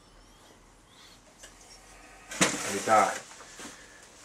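Quiet room tone, then a little past halfway a brief, unclear utterance from a man's voice that starts suddenly.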